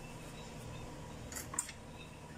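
Faint room tone with two brief soft rustles about a second and a half in, as a banana is peeled by hand.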